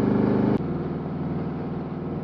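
Harley-Davidson Road King Special's V-twin engine running on the road, heard from the rider's seat. About half a second in, the engine sound drops suddenly to a quieter note with a faint click, then carries on steadily.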